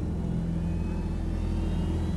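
A low, steady rumbling drone from the dramatic underscore, sustained through the pause with a few faint high held tones above it.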